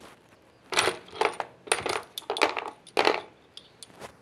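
Steel sockets and a ratchet handle clinking against each other and the plastic tray of a socket set as a gloved hand picks through it: a quick run of metallic clatters starting about a second in and lasting some two seconds.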